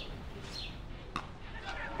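Cricket bat striking the ball once, a short sharp knock about a second in, as the batsman lofts the ball high into the air, over faint background noise.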